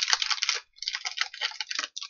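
Clear plastic packaging crinkling as it is handled: a run of dense, irregular crackles with a brief pause about a third of the way in.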